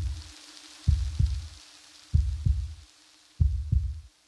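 Heartbeat sound effect: low double thumps, lub-dub, three times just over a second apart, over a faint steady hum and hiss.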